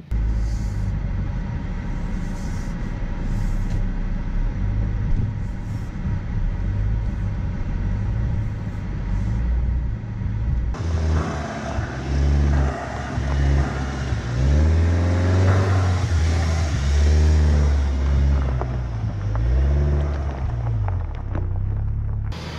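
Audi Q3 engine with a steady low rumble, then from about halfway the engine note rising and falling several times as the car pulls away.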